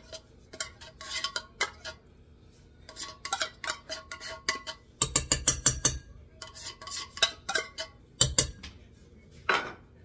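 A metal spoon scraping and knocking inside an opened tin can, working out thick condensed milk. It goes as a string of short metallic clicks and taps, with a quick loud run of knocks about five seconds in and another brief loud cluster just after eight seconds.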